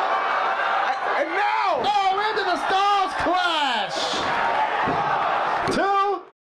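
Excited shouting of oh-like cries from the wrestling commentary and crowd, with several sharp thuds of bodies slamming onto the ring canvas as a piledriver and a Styles Clash are landed.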